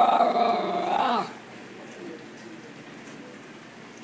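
A schnauzer's long, drawn-out whining call while begging for food, held on one pitch, then dipping and stopping about a second in.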